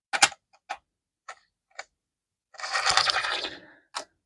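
Handling noise from pennies being picked up and moved by gloved hands on a wooden table: four light clicks about half a second apart, then about a second of rustling, and one more click at the end.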